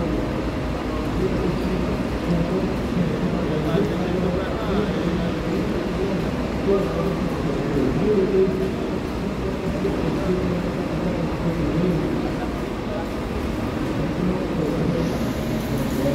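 Diesel engine of a double-decker coach running steadily as the bus manoeuvres, with voices in the background.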